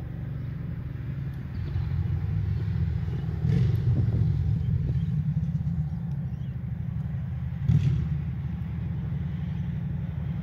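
Car engine running with a steady low rumble, with brief louder surges about a third of the way in and again near the end.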